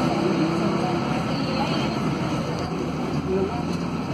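Cabin noise inside a Mercedes-Benz OC500LE city bus on the move: its OM936 six-cylinder diesel engine and road noise make a steady drone.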